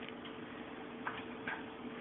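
A faint steady hum with a few light, irregular ticks, about four in two seconds.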